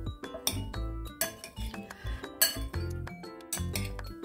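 Metal fork clinking irregularly against a ceramic bowl while tossing diced mango and salted egg, several sharp clinks with the loudest a little past the middle. Background music with a steady beat plays throughout.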